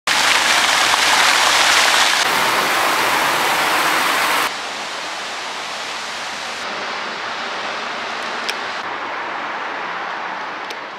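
Fountain jets splashing into a basin: a loud, steady rush of water. About four and a half seconds in it cuts suddenly to a quieter, steady street noise of road traffic.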